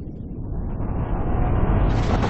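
Rumbling whoosh sound effect, a riser that swells louder and brighter, building to a burst at the very end for an animated logo reveal.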